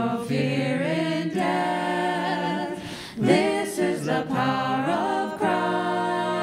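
Small mixed group of men's and women's voices singing a hymn together in harmony, a cappella, in sustained held phrases.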